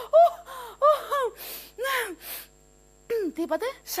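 A woman's theatrical gasps and short wordless exclamations, with breathy intakes of breath, then a brief pause before her voice starts again near the end.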